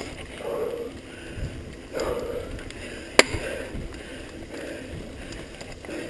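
Mountain bike ridden fast down a dirt singletrack: rough, uneven tyre and rattle noise from the bike on dirt and leaves. One sharp knock about three seconds in.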